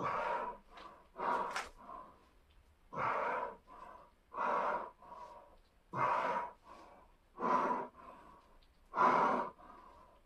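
A man breathing hard through a set of dumbbell rows: a loud exhalation about every one and a half seconds, in time with the reps, each followed by a softer breath.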